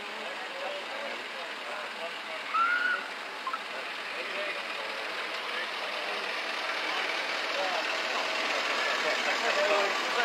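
Slow procession of pickup trucks and cars driving past, a steady engine and tyre noise that grows louder toward the end, with onlookers chattering in the background. A short high chirp or whistle-like tone stands out about two and a half seconds in.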